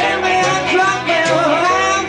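Live band playing a song: a bending melodic lead line over a steady beat.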